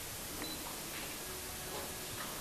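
Steady room noise and hiss in a small room, with one faint click about half a second in.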